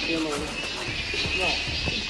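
People's voices talking indistinctly, over background music and a steady high-pitched drone.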